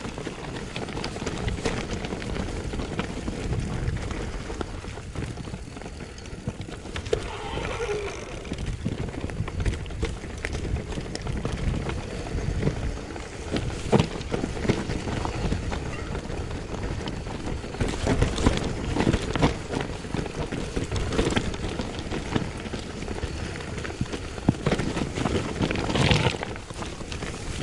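Mountain bike rolling downhill on rocky forest singletrack: continuous tyre noise over dirt and stones, with frequent knocks and rattles from the bike over the rough ground and a brief squeak about eight seconds in.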